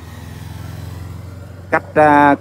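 Race escort motorcycle passing close by, its engine running with a steady low note.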